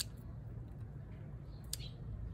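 Small pruning scissors snipping shoots on a bonsai: a sharp snip at the start and a fainter one near the end.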